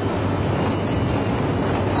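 Moskvitch Aleko engine running steadily at full throttle near 100 km/h, heard from inside the cabin with road and wind noise, as the car strains to reach its top end in fourth gear.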